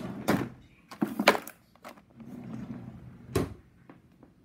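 A few sharp knocks and thuds of household objects being handled and moved about while searching for a screwdriver, the loudest a quick cluster about a second in and another single knock near the end, with softer rustling between.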